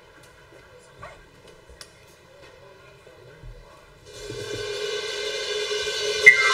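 A live band starting a number: a few seconds of quiet with faint knocks on the stage, then a swelling wash of sound, like a cymbal roll, rising steadily in loudness over the last two seconds.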